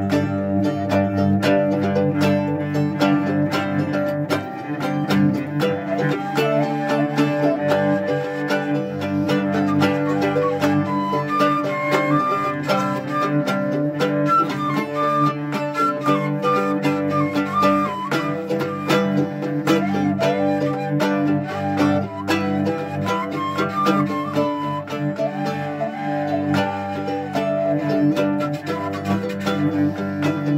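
Instrumental folk music: a mandolin-type instrument picked in a quick, steady rhythm over a bowed cello holding low notes, with a wavering melody line above.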